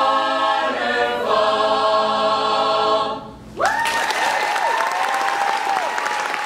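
Mixed a cappella choir singing and holding a final chord that cuts off about three and a half seconds in, followed by audience applause and cheering.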